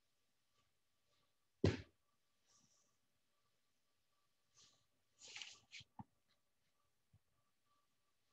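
Soft clay being worked by hand on a work table while a coil is rolled: one dull thump about two seconds in, then a few short brushing and tapping sounds.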